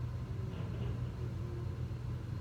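Steady low hum of background noise, with faint indistinct sounds over it about half a second in.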